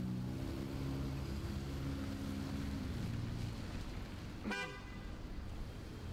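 Street traffic: a vehicle engine running with a steady low hum that fades over the first few seconds, then one brief horn-like toot about four and a half seconds in.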